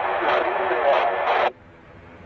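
Air traffic radio transmission: a voice over a narrow, thin-sounding radio channel that cuts off abruptly about one and a half seconds in, leaving only faint steady hiss.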